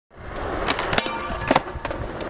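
Skateboard wheels rolling on smooth concrete, a steady rumble with a few sharp clicks and knocks from the board.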